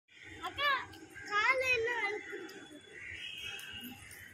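A child's high-pitched voice calling out in short sing-song bursts, once about half a second in and again several times between one and a half and two seconds, then quieter.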